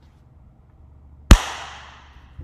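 A single sharp, very loud bang about a second and a half in, its noisy tail dying away over the next half second.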